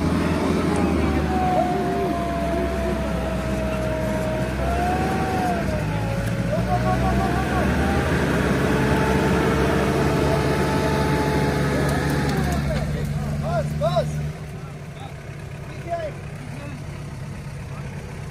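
SUV engines working hard under load as a Toyota Prado tows a Mitsubishi Pajero up out of a ditch on a tow strap, dropping abruptly to a quieter idle about fourteen seconds in once the pull is done.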